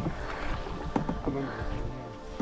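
Canoe being paddled: the paddle dips and pulls through calm water, with small splashes, drips and a few light knocks.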